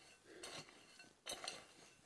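Faint scraping of a metal garden hoe blade dragging gritty soil over a seed furrow, twice.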